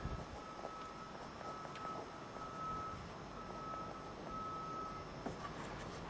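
Faint scratching of a pen writing on paper. A thin, faint high tone comes and goes in short stretches over it.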